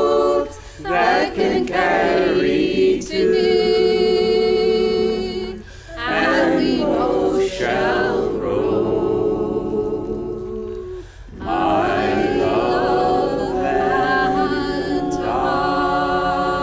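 A woman singing a folk song, with other voices singing along, with short breaks between the sung lines.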